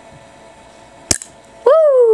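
The glass marble of a ramune-style soda bottle is forced down into the neck with the plastic plunger, giving one sharp pop about a second in. Just after it comes a loud, drawn-out exclamation from a woman, falling in pitch.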